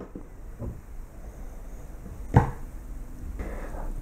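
Quiet room with faint small handling sounds and one sharp click about two and a half seconds in.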